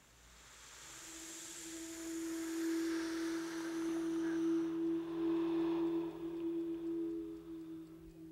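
Sustained eerie synthesizer note from a television score cue. It swells in over the first few seconds under a high shimmering wash, which fades out by the middle, and the note holds steady before easing off near the end.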